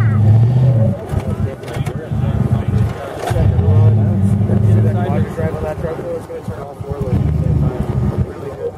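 Engine of a lifted Jeep Grand Cherokee on oversized mud tyres, revved in four bursts with short lulls between, as the truck works over a crushed car.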